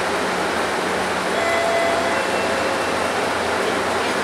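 Inside a Mercedes-Benz Citaro city bus under way: a steady rush of engine and road noise with a low drone, and a few faint high whines that come and go in the middle.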